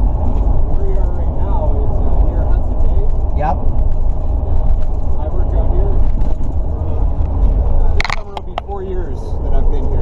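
Steady road and engine rumble inside the rear cabin of a moving Ford police truck, with faint voices over it. A sharp click comes about eight seconds in, and the rumble dips briefly after it.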